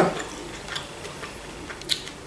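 Quiet chewing with a few soft mouth clicks, the loudest just before the end.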